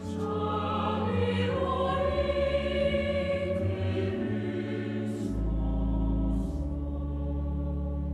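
A congregation singing a closing hymn together, over long-held low notes of the accompaniment.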